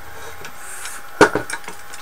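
Handling noise from an aluminium rectangular-tube drive frame with a scooter wheel and motor inside, turned over in the hands: a sharp knock a little over a second in, then a few lighter clicks.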